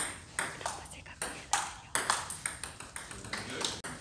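A table tennis ball clicking off the bats and the table in a rally, a sharp tick about three or four times a second.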